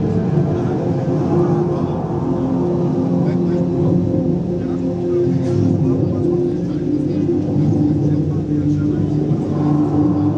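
Soundtrack of a projection-mapping show over loudspeakers: sustained low droning tones layered over a dense, rumbling wash of sound effects.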